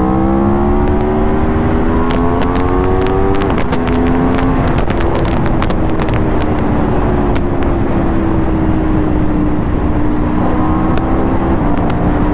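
Aprilia RSV4 RR's 999 cc V4 engine pulling hard, its pitch rising with sharp drops at upshifts about three and a half and four and a half seconds in, then the revs sinking slowly as the bike eases off. Heavy wind rush on the microphone underneath, with a scatter of sharp pops through the middle.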